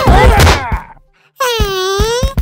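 Lively background music that fades out about a second in, then a cartoon character's long crying wail whose pitch sags and rises again.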